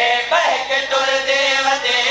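A zakir and his backing reciters, men's voices, chanting a sung passage of a majlis recitation in long, wavering held notes. The pitch swoops upward about a third of a second in.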